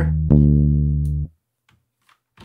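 A single low bass note from the software instrument on the MIDI bass track, sounded as its notes are dragged in the editor. It starts about a third of a second in, fades slightly and cuts off after about a second, followed by a few faint clicks.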